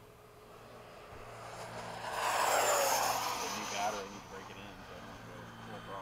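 Electric ducted-fan RC model jet making a low, fast pass: its whooshing whine swells over about two seconds, peaks between two and three seconds in with a drop in pitch as it goes by, then fades away.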